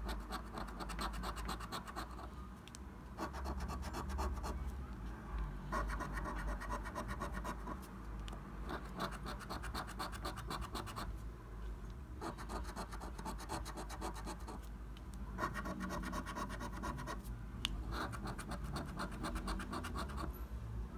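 A coin scratching the scratch-off coating from a paper scratch card. It comes in about seven bursts of rapid scraping strokes, each a second or two long, with short pauses between.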